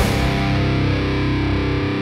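Background music: a distorted electric guitar chord struck once and held.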